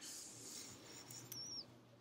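Near silence: faint room tone, with a brief faint high squeak about one and a half seconds in.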